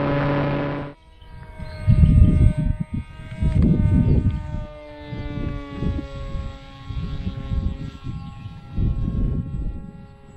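Electric motor and pusher propeller of an FX-61 Phantom flying wing. For the first second it is a loud, steady buzz heard close up. It cuts off suddenly and becomes a thinner, distant drone whose pitch slowly falls, with low gusts of wind on the microphone about two, four and nine seconds in.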